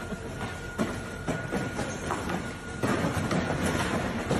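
Stacked cardboard boxes toppling from warehouse racking: a rumbling run of crashes and thuds that grows heavier about three seconds in.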